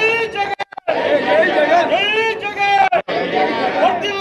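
Several people talking loudly over one another.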